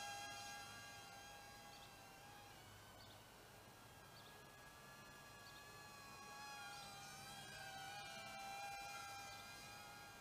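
Cheerson CX-10D nano quadcopter's tiny coreless motors and propellers whining: a thin, high tone with overtones that wavers in pitch as the throttle changes. It is faint and fades as the quad moves away, then grows louder again about seven seconds in.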